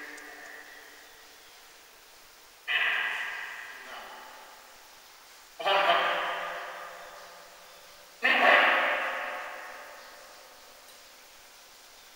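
Geobox spirit box speaking three short electronic voice fragments about three seconds apart. Each starts suddenly and trails off in a long echo; one is read as "I wanna talk".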